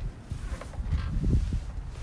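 Low rumbling wind and handling noise on the microphone, with a few soft thumps, while the trunk lid of a sedan is raised.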